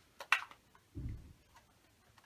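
Sharp clicks of a small round makeup container being handled as someone tries to get it open, followed about a second in by a short, low thump.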